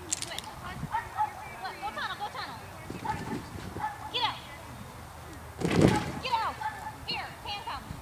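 Faint, distant voices calling across an open field in short, pitch-shifting calls, with a brief loud rush of noise just before six seconds in.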